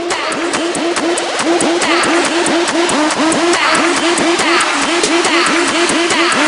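Electronic dance music: a fast riff of short falling notes repeating evenly, about five a second, over a steady ticking beat. It grows louder over the first second or two.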